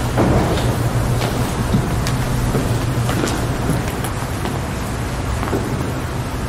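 Steady rumbling room noise with a low hum, and a few light knocks of footsteps as people walk across the chancel.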